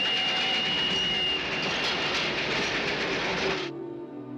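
Train running loudly with a high, steady squeal over it that fades out about a second and a half in. The train sound cuts off abruptly near the end, giving way to quieter music.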